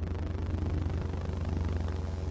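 A steady, deep rumbling drone with a constant low hum underneath, like an engine or rotor heard from a distance.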